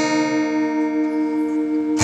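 Acoustic guitars holding a strummed chord and letting it ring for about two seconds with no new strums, then strumming again right at the end.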